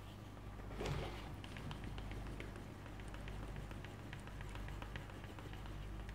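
A small wooden hand burnisher rubbed back and forth along the dampened edge of a leather piece: a faint, fast run of small scratchy ticks. It is burnishing the edge, flattening the leather fibres so the edge turns smooth and shiny.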